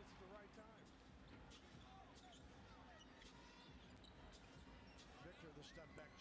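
Very faint NBA game broadcast audio: a commentator talking and a basketball bouncing on the hardwood court in short, scattered knocks.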